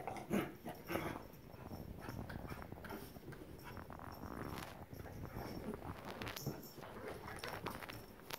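Two corgis play-fighting: dog vocal noises and scuffling, with two sharp louder outbursts in the first second, then continuous irregular rough-and-tumble sounds.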